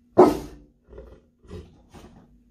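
A large mastiff gives one loud, deep bark about a quarter second in, followed by two much quieter short sounds about a second and a second and a half in.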